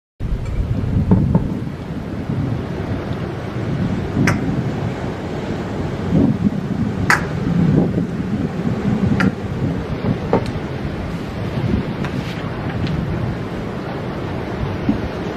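Low, rumbling wind-like noise on the microphone, with a few sharp clicks scattered through it.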